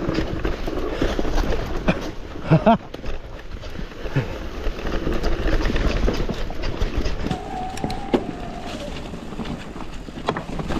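Mountain bike rolling downhill over leaves, rocks and roots: steady tyre and rattle noise with low rumble on the microphone and scattered knocks from the bike. A short laugh comes about two and a half seconds in, and a brief steady whine rises near the end.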